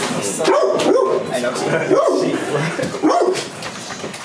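Men's voices laughing and calling out, several overlapping in short bursts.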